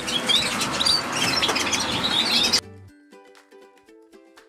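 Many caged canaries chirping and singing at once, with quick high chirps and trills. They cut off abruptly about two and a half seconds in, and soft plucked-string music takes over.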